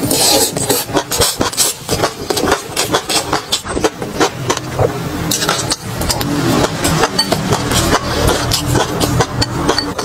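Close-up chewing of a mouthful of food, with dense, irregular crackling clicks and mouth smacks throughout.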